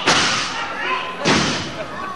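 Two heavy thuds on a wrestling ring mat, one right at the start and another about a second and a half later, each booming briefly through the ring.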